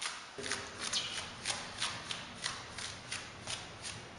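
Wide paint brush loaded with watered-down eggshell wall paint being flicked again and again, a hand dragged back across the bristles so they snap forward and spatter paint, about three quick flicks a second.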